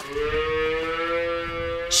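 A cow mooing: one long call lasting about two seconds, its pitch rising slightly.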